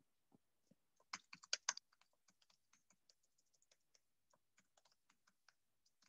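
Faint typing on a computer keyboard: a quick run of keystrokes about a second in, then lighter, scattered keystrokes.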